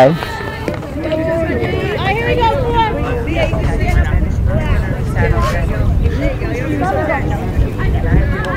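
Voices of players and spectators calling out and chattering across a softball field, not close to the microphone, over a low wind rumble on the microphone.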